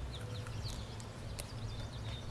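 Outdoor garden ambience: a few short, high bird chirps over a steady low rumble, with one sharp click about one and a half seconds in.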